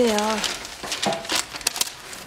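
A woman's voice trailing off in the first half second, then light rustling and a few small clicks.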